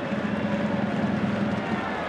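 Football stadium crowd noise: a steady din of many voices, with a held low drone running through it.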